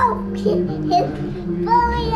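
A young girl's high-pitched squeals and giggles, one at the very start and a longer one near the end, over music playing in the background.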